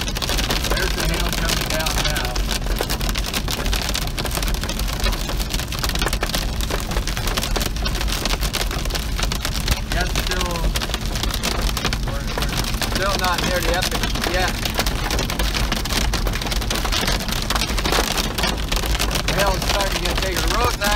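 Heavy rain and small hail drumming on a car's hood and roof, heard from inside the cabin as a dense, steady patter of many small hits over road noise.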